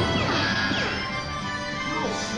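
Dark ride show soundtrack of loud music with crashing sound effects and a few quick falling whines about half a second in.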